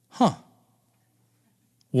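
A man's short sigh of despair, voiced and falling steeply in pitch, about a quarter of a second in.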